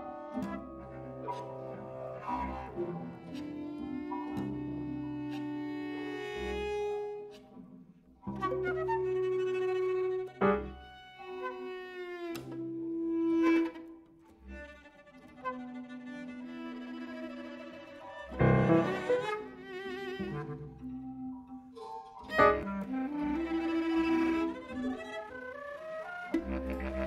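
Contemporary concert music in cello-like bowed-string tones: sustained, overlapping notes that start and stop abruptly, with sharper, louder attacks about ten, eighteen and twenty-two seconds in.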